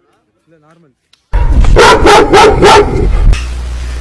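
After a short silence, a loud run of barks, about three a second, over a heavy low rumble, followed by a laugh near the end.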